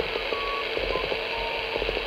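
Audio from a homebrew phasing direct conversion receiver: steady receiver hiss with the 3699 kHz beacon's beat note heard as short steady tones that step down in pitch, from about 1.1 kHz to 900 Hz, as the DDS VFO is tuned up in frequency toward the beacon. Light crackling runs underneath.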